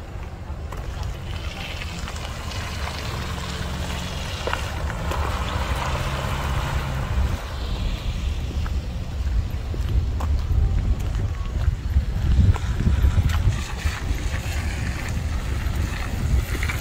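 Wind buffeting a handheld camera's microphone outdoors: an uneven low rumble that grows gradually louder over the stretch.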